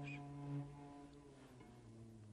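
Quiet background score of low bowed strings: a held low note fades away about halfway, then a lower note swells in near the end.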